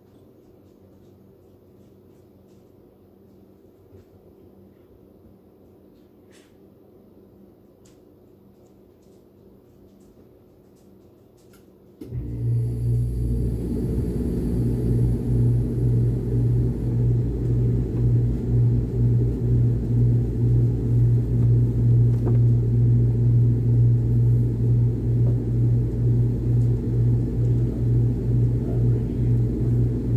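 Miller package air conditioner switching on about twelve seconds in on a call for cooling, the thermostat having been turned down. A quiet stretch with a few faint clicks gives way suddenly to a loud, steady low hum and rumble of the running unit through the registers, with a slight pulsing.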